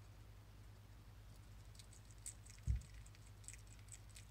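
Hedgehog chewing a snack: faint, irregular quick clicks, with one low thump a little past halfway through.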